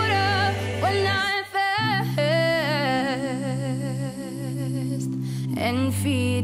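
Male gospel vocal group singing held chords in close harmony, the voices wavering with vibrato; the sound breaks off briefly about a second and a half in, then a long chord is held.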